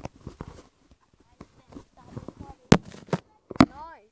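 Close-up scuffing and handling noise, with three sharp knocks in the second half, the last two the loudest. A short voiced sound comes just before the end.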